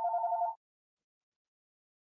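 A steady electronic tone of two pitches sounding together, with a faint slight pulse, that cuts off about half a second in.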